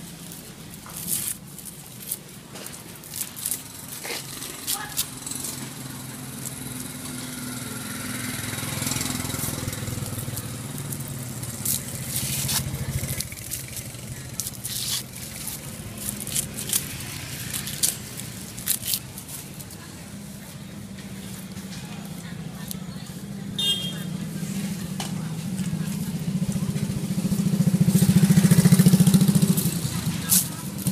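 Street ambience of passing motor traffic, one vehicle swelling loudest near the end, with scattered sharp clicks and rustles from corn husks being handled at a grilled-corn stall.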